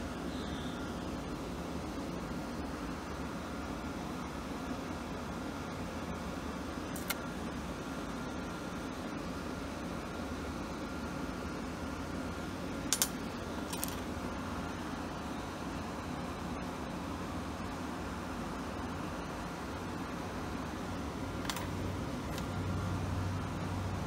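Steady low mechanical hum with a few short, sharp clicks scattered through it, the loudest a pair about halfway through.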